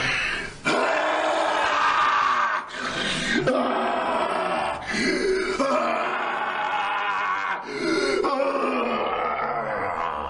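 Men growling and snarling like dogs in long, drawn-out growls, each lasting a second or two with short breaks between.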